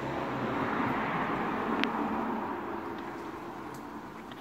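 A vehicle passing: a rushing noise that swells over the first couple of seconds and then fades away, with one short tick near the middle.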